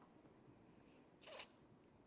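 Near silence: room tone over a call, broken once, about a second in, by a brief faint sound.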